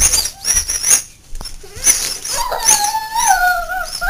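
A few short noisy bursts, then about two seconds in a long wavering howl that is held for over a second and sags slightly in pitch near the end.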